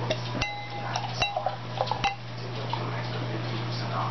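Beer poured from a glass bottle into a tilted glass chalice: the bottle neck clinks against the glass rim with a short ring three times in the first two seconds. The pour then runs on more quietly over a steady low hum.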